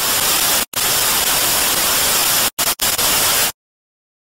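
Loud hiss of white-noise static, a sound effect laid under the outro logo animation. It drops out briefly once under a second in, stutters with three quick gaps near three seconds in, then cuts off suddenly shortly before the end.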